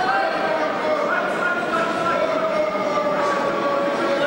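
Several people shouting in long, drawn-out calls that overlap, echoing in a large sports hall.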